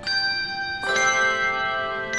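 Handbell choir ringing brass handbells: a chord is struck at the start and a fuller, lower chord about a second in, the bells ringing on in sustained overlapping tones.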